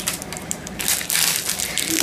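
Plastic ice-pop wrapper crinkling and crackling as it is handled, a dense run of irregular crackles.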